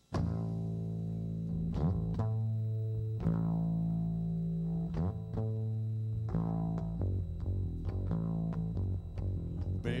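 Electric bass guitar playing a riff of long, held low notes that change every second or two, starting suddenly; singing comes in at the very end.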